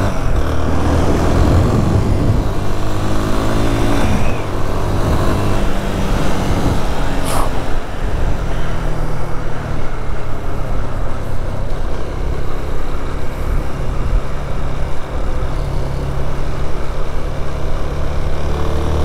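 Motorcycle engine pulling away and accelerating, its pitch climbing through the gears over the first few seconds, then running steadily at cruising speed with wind noise over the helmet microphone.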